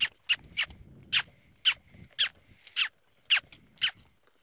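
A horse trainer smooching: a string of about nine short, sharp kissing squeaks, roughly two a second, cueing a saddled mare in a round pen to pick up speed from the trot into the lope.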